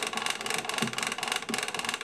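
Winding crank of a 1921 Zonophone wind-up gramophone being turned, its spring-motor ratchet giving a rapid, even run of clicks as the double spring is wound up.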